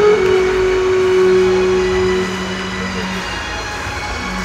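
Backing music: a held organ-like chord from a keyboard instrument. Its higher note stops about two seconds in and its lower note about a second later.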